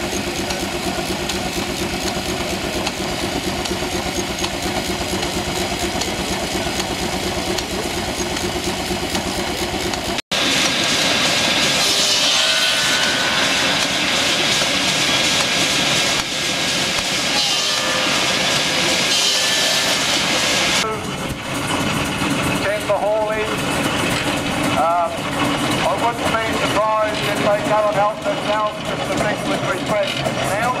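Portable steam engine driving a circular saw bench through a long flat belt, the engine, belt and spinning blade running steadily. After a sudden break about ten seconds in, the sound turns louder and brighter. In the last third, voices talk over engine noise.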